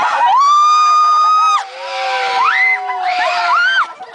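Riders screaming together on a swinging Viking-ship amusement ride: several overlapping high screams, one held for over a second, then short rising shrieks near the end.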